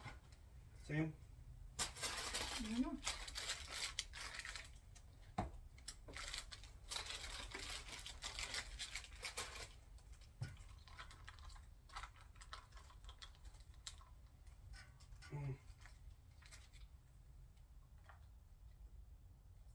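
Crinkling and rustling of food wrappers being handled during a meal, in two longer stretches a couple of seconds in and again around seven to nine seconds, with scattered small clicks. There are a few brief murmurs from voices.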